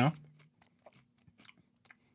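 Faint, sparse crunching of a dry, spiced whole-wheat flatbread crisp being chewed: a few soft, scattered clicks after a man's last word.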